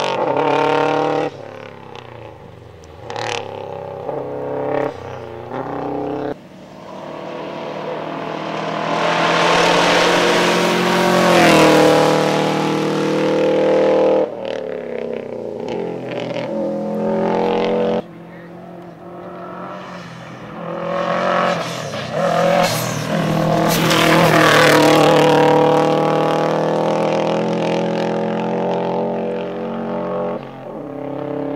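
A rally car's engine run hard in a series of short clips, revving up and dropping back with gear changes as the car passes, loudest around ten to thirteen seconds in and again around twenty-three to twenty-five seconds.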